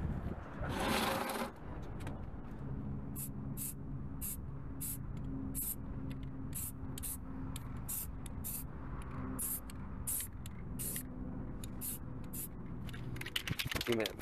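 Aerosol spray can of primer hissing, first in one longer burst about a second in, then in a long run of short spurts, about two a second. The spurts are too short to lay the paint on evenly.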